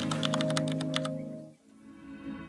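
Rapid keyboard-typing clicks used as a sound effect, over a held music chord. The clicks stop about a second in, the chord fades out, and a softer, shorter tone follows near the end.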